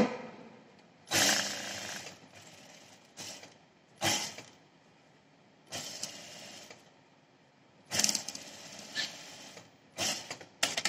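JUKI industrial sewing machine stitching in short stop-start runs: about six brief bursts of the machine running, each a second or less, with pauses between as the fabric is repositioned.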